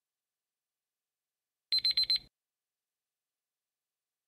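Digital countdown-timer alarm: four rapid high-pitched beeps in about half a second, about two seconds in, signalling that time is up.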